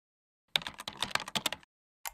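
Computer keyboard typing sound effect: a quick run of key clicks lasting about a second, starting about half a second in.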